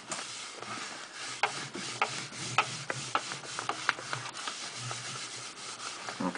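Paper rustling and rubbing as a hand turns and smooths the sheets of a large lined paper pad, with scattered light taps and crackles.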